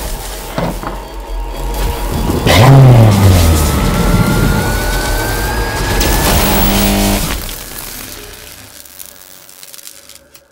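Edited intro sound over music: a sudden loud rush about two and a half seconds in with a low tone falling away, then a thin whine rising in pitch over about three seconds, before it all fades out near the end.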